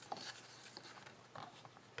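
Faint handling sounds of a sheet of cardstock being slid into place on a paper trimmer, with a couple of light ticks.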